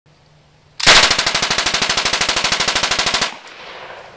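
Thompson submachine gun firing one long full-auto burst of about two and a half seconds, the shots coming rapidly and evenly. The burst cuts off and its echo fades away.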